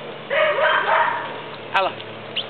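A terrier–pit bull mix dog gives one drawn-out, harsh bark about a third of a second in, lasting under a second.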